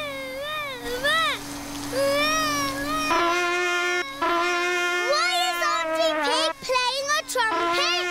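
Animated baby crying in wavering wails over a steady droning hum. About three seconds in, a higher steady tone and several more overlapping pitched sounds join, making a thick din.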